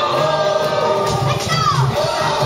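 Baseball fans singing a cheer song together in unison over music with a steady beat.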